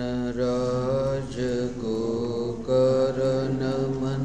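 A man chanting a mantra in long, held notes, his voice stepping between a few pitches, with two brief breaks for breath.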